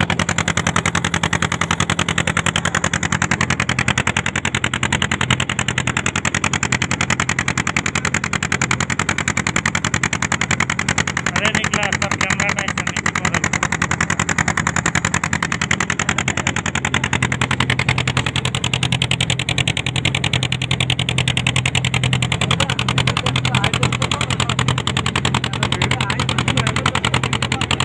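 Boat engine running steadily under way, a fast, even pulsing of engine strokes with a steady low drone.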